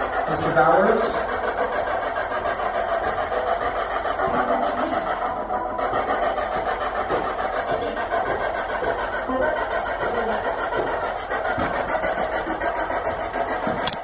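Ghost-hunting spirit box sweeping through radio stations: a continuous choppy stream of static mixed with broken snippets of voices.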